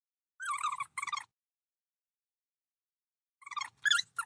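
High-pitched, garbled cartoon-creature voices trading a short greeting: a quick two-part chatter about half a second in, and a three-part reply near the end, with dead silence between.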